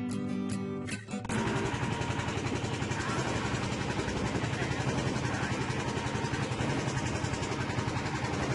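Strummed acoustic guitar music, cut off about a second in by a small fishing boat's engine running steadily under way, with a fast even pulse and the rush of water along the hull.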